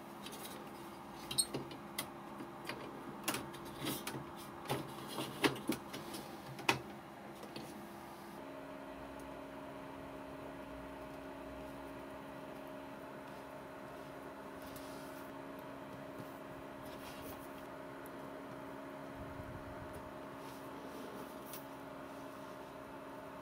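Clicks and knocks of a circuit board and tools being handled, a dozen or so over the first eight seconds. After that a steady low electrical hum runs under light soldering work on the board.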